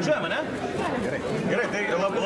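Speech: a man talking, with chatter from other voices around him.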